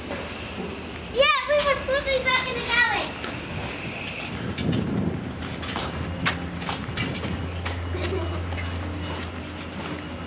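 A child's high-pitched squealing laughter, sliding up and down in pitch, starting about a second in and lasting about two seconds. After it, a few knocks and clatter from a sack truck wheeled over concrete, and a steady low hum near the end.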